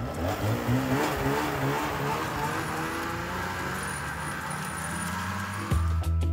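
Snowmobile engine running as the machine moves along the trail, its pitch wavering up and down at first and then climbing steadily over the last few seconds, with a hiss of track and snow noise under it.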